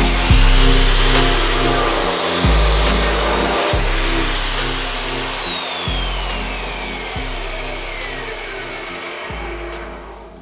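Bosch GCO 220 cutoff saw's electric motor running at full speed with a high whine, dipping in pitch with a hiss for about a second in the first half, picking up again, then switched off and spinning down with a long, steadily falling whine.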